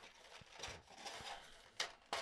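Faint rustling and crinkling of a cardboard box and clear plastic blister tray being handled and pried open, with a sharp click near the end.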